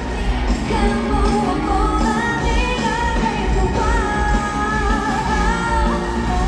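A woman singing lead into a handheld microphone over a live rock band, heard from the stands through a stadium PA. Her held, wavering sung notes ride over steady drums and bass.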